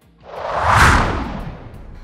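A whoosh sound effect that swells up and dies away over about a second, with a deep low rumble under it, used as a scene-change transition.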